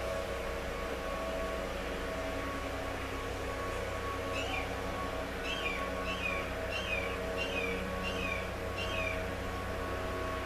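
An animal calling: seven short, high calls that rise briefly and then fall, starting about four seconds in and repeating about every two-thirds of a second.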